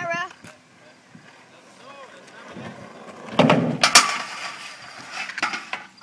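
Skateboard wheels rolling over concrete and growing louder, then a heavy clack of the board hitting about three and a half seconds in, a second sharp clack half a second later, and a few lighter knocks near the end.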